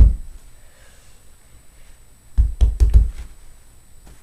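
A fist pounding a folded, damp ShamWow cloth on a carpeted floor, pressing it into a spill to soak up the liquid: dull thumps, one right at the start, then a quick run of about six between two and three and a half seconds in.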